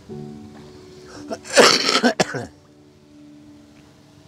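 A person laughing in one short, breathy burst about one and a half seconds in, over background music with steady held notes.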